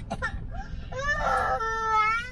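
Young child crying: a wail that starts about a second in, rises in pitch and then holds steady.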